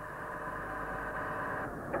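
Six-cylinder Perkins diesel engine of a semi-submersible running steadily, a continuous even drone.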